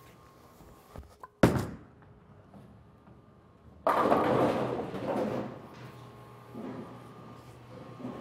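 An Ebonite GB4 Hybrid bowling ball lands on the lane with a sharp thud about a second and a half in. A little over two seconds later it drives into the pins in the pocket with a sudden loud crash of scattering pins that rattles on and fades over the next couple of seconds.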